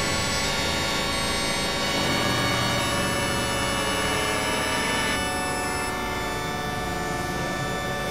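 Dense electronic synthesizer drone: many sustained tones held together over a noisy wash, like a horn-like cluster. About five seconds in, the upper tones thin out and the texture shifts.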